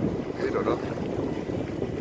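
Wind buffeting the phone's microphone on a sailing yacht under way: a steady low rumble.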